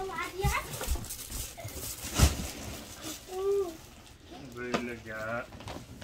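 Short snatches of a voice, with a single sharp knock about two seconds in and a few soft thumps before it.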